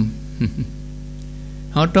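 Steady low electrical hum in a pause in a man's speech. There is a brief vocal sound about half a second in, and speech resumes near the end.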